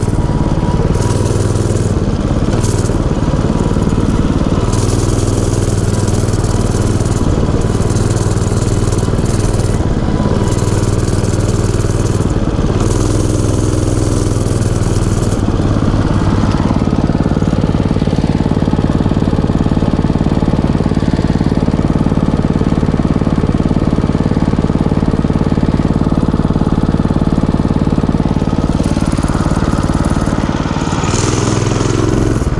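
Small single-cylinder gas engine of a mini bike running steadily while it is ridden, its note changing about halfway through.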